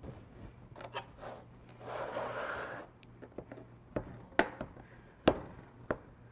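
Chef's knife slicing cooked chicken tenderloins on a plastic cutting board. Light taps and scrapes come and go, with a brief scraping noise about two seconds in and two sharper knocks of the blade on the board near the end.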